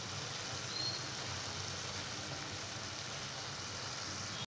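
Val bean pod curry sizzling steadily in a steel pan on the stove, an even hiss with no breaks.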